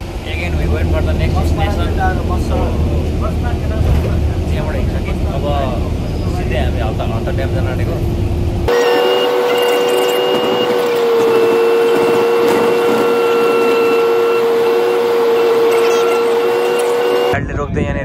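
Inside a moving bus: a low engine rumble with faint voices over it. About halfway it changes abruptly to a steady whine of several held tones, with the rumble gone.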